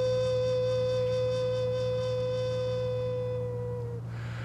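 Native American flute holding one long steady note that fades out near the end, over a steady low hum.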